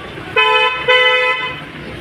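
A vehicle horn honking twice, two flat steady toots, the second a little longer.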